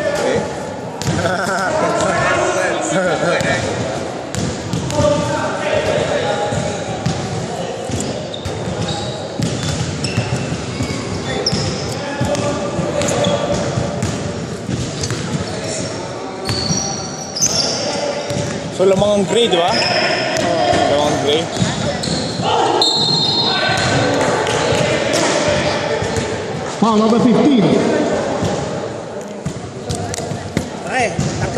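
Basketball bouncing and being dribbled on a hardwood gym floor, mixed with players' voices, echoing in a large gymnasium.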